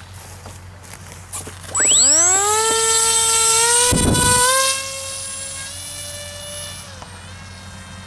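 Hubsan Spy Hawk RC plane's electric motor and propeller spinning up about two seconds in with a fast rising whine, then holding a steady high-pitched whine at full throttle. A brief rush of noise comes as the plane is hand-launched, after which the whine carries on much quieter as it flies off.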